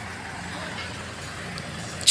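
Steady low background noise with a faint low hum running under it.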